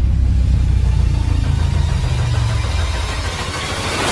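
Background music in a stripped-back, bass-only passage: a deep, steady bass line carries on with the higher parts filtered away, fading a little toward the end before the full track comes back.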